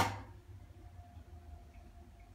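A toy spinning top on a glass-ceramic stovetop: a sharp click with a short ringing tail at the start, then a faint, steady high hum as it keeps spinning.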